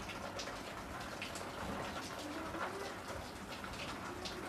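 A marker pen writing on a whiteboard in short strokes, with a bird cooing softly in the background.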